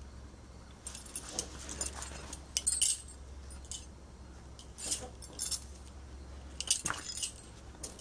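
Bangles on the wrists jingling and clinking in short bursts, several times, as the hands hand-stitch and handle a fabric-covered cardboard panel.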